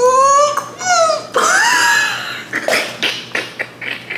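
High-pitched, drawn-out whining cries of disgust from a person reacting to a foul-tasting mystery drink, followed near the end by a quick run of short breathy sounds, about four a second.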